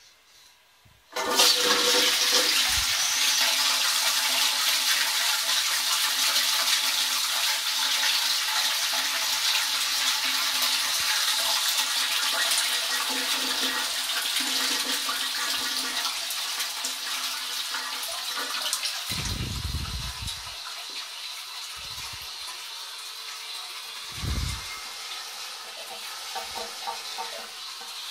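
Royal Venton New Coronet low-level cistern flushing into an Armitage Shanks Magnia pan: a sudden loud rush of water about a second in that slowly eases over the following seconds. Two dull thumps come in the later part.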